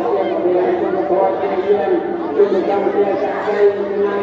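Crowd chatter: many people talking at once, with a steady low tone underneath.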